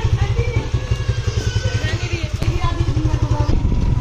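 Suzuki Gixxer SF single-cylinder motorcycle engine running steadily at low revs with a rapid low beat, with faint voices over it.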